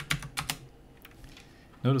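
Computer keyboard keystrokes: a quick run of about five key presses in the first half second, then they stop.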